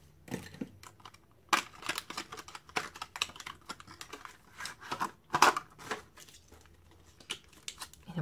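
Clear plastic packaging around a bottle of foundation being handled and pulled open by hand: a quick run of clicks, crinkles and scratchy tearing, loudest about one and a half and five and a half seconds in.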